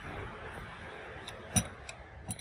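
A sharp metallic click about one and a half seconds in, with a couple of fainter clicks around it, over a steady hiss: the tractor's metal controls, its pedals or levers, being worked by hand with the engine off.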